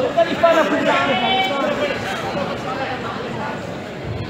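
Overlapping voices echoing in a large hall, with one raised voice calling out about a second in, then quieter indistinct talk.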